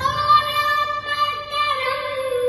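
A song playing, with a high voice holding one long sung note that steps slightly lower near the end.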